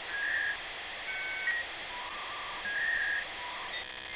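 Electronic logo sound effect: a steady hiss with held beeping tones that step between a few pitches.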